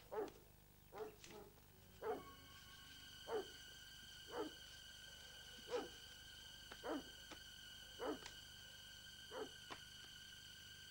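A dog barking over and over at a fairly even pace, about one bark a second, faint. A faint steady high tone comes in about two seconds in and holds.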